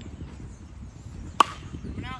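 Metal baseball bat striking a pitched ball once about a second and a half in: a sharp crack with a brief ring.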